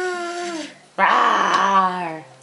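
Infant vocalizing: a high, drawn-out "aah" that tails off and falls in pitch. After a short gap comes a louder, rough, growly cry that drops in pitch, like a playful roar.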